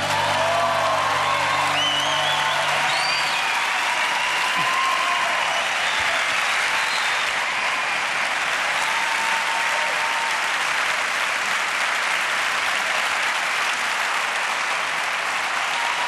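Large theatre audience applauding steadily, with a few shouts of cheering early on. The band's last held chord dies away in the first few seconds.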